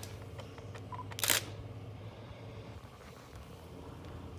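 A camera shutter sound: one short, sharp click about a second in, over a low steady room hum.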